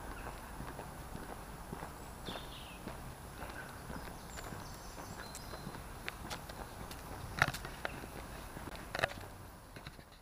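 Footsteps of people walking on a gritty surfaced path, a run of small crunches and clicks with two sharper clicks near the end, over a steady low background rumble.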